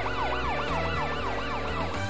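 Cartoon police car siren in a fast yelp, its pitch rising and falling about four times a second.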